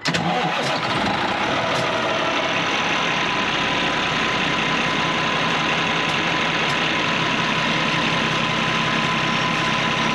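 Motorhome's rear diesel engine idling steadily in the open engine bay, cold, with a steady whine over the running.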